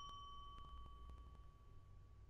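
Fading ring of a struck bell-like chime: one clear tone with fainter higher tones above it, dying away slowly over about two seconds. A few faint clicks sound under it.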